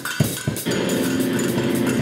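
A live band playing: two sharp percussion hits within the first half second, then steady held pitched tones from the instruments.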